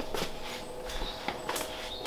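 A few light knocks and scrapes of a clear plastic storage tub being carried and set down on a steel table, over a faint steady room hum.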